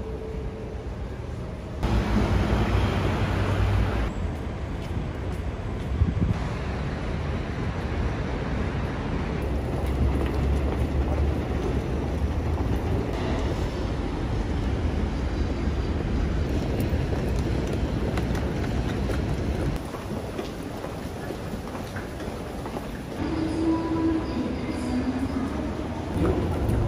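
Busy city ambience in a series of short cuts, dominated by the low rumble of road traffic. Near the end it changes to the echoing crowd noise of a station concourse.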